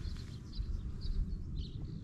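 Faint outdoor ambience: a steady low rumble with three or four short, faint high chirps.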